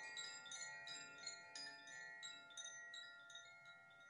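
A set of four hanging cylindrical wooden tube chimes ringing. Frequent soft strikes overlap into sustained bell-like tones that slowly fade as the chimes settle.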